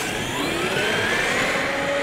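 Brushless electric motor and drivetrain of a HoBao Hyper MT Sport Plus RC monster truck running on 4S, whining and rising in pitch as the truck accelerates away, then levelling off. A steady rushing noise runs under the whine.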